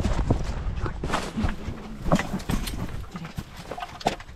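Dry grass brush rustling and crackling, with irregular footsteps and knocks, as a person pushes through and settles into a grass-covered hunting blind.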